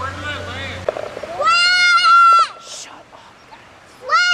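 A person's loud, drawn-out yell, held steady for about a second starting about one and a half seconds in, with a second, shorter yell that rises and falls at the very end.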